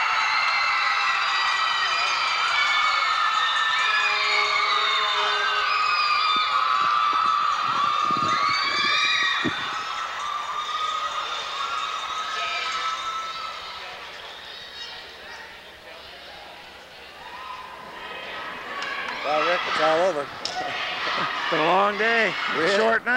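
A crowd of many high-pitched young voices cheering and shouting together in a celebration, loud at first and then fading away over several seconds after about ten seconds in. A few dull thumps sound around eight to nine seconds in.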